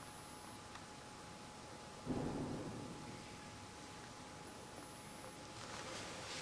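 A single dull thump about two seconds in, fading over about a second, over a steady faint hiss and a thin steady tone.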